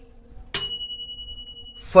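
A bright bell-like chime about half a second in: a single sharp strike that rings on a few steady high tones for about a second, then stops. It is the notification-bell sound effect of a YouTube subscribe-button animation.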